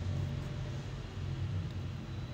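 A steady low rumble with a faint hiss above it, with no clear events.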